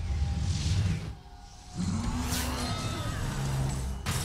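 Film action-scene soundtrack: a deep rumble under whooshing effects. The rumble drops out briefly just after a second in, then returns with a rising swoosh and swirling, gliding tones in the score.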